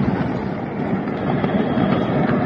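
Steady rumbling roar following a firework factory explosion, with no separate blasts standing out.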